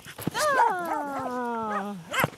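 A corgi giving a long, drawn-out whining call that slides slowly down in pitch, with a few short yelps over it: excited play vocalising.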